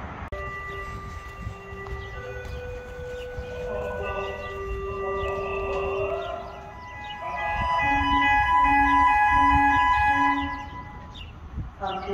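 Fire station alerting tones: a sequence of steady electronic tones, often several sounding together, with a rising sweep about halfway through. They grow louder near the end, where a low tone pulses four times, then stop shortly before the dispatch call.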